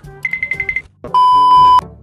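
Electronic beep sound effects: a quick run of short high beeps, then about a second in a loud steady beep lasting just over half a second.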